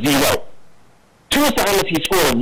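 Distorted, unintelligible voice in two short bursts, the first ending just after the start and the next beginning about a second and a quarter later.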